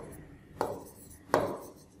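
Marker pen writing on a whiteboard: two short, sharp taps of the tip against the board, about three-quarters of a second apart.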